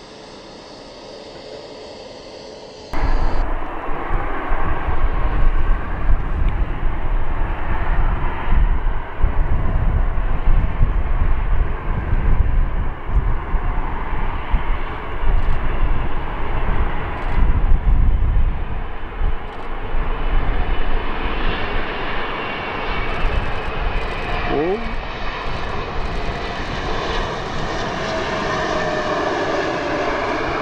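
Airbus A380's four jet engines running loud: a deep, rough rumble with a whine above it, jumping up suddenly about three seconds in and staying loud.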